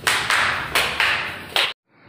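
Bare feet slapping on marble stair steps while walking down, about five irregular steps over a rustling noise from the handheld phone, cut off suddenly near the end.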